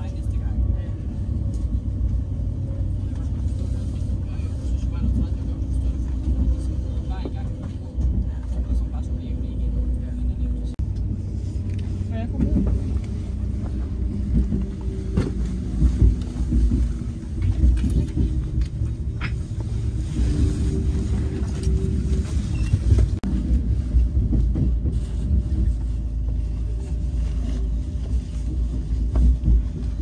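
Passenger train running along the rails, heard from inside the carriage: a steady low rumble with faint clicks from the track.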